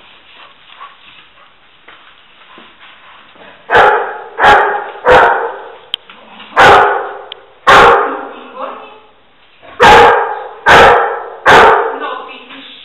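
A search-and-rescue dog barking eight loud times, with an echo after each bark. The barking is its bark indication, signalling that it has found the person hidden in the rubble.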